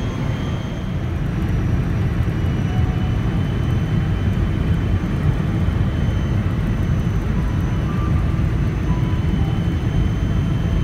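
Boeing 777-200 cabin noise during descent: a steady rumble of the engines and rushing airflow, with a faint steady high whine above it.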